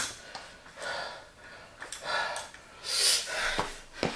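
Heavy breathing after a dumbbell set: three or four breathy exhalations about a second apart. A few faint clicks come from the adjustable dumbbells as their weight is reset.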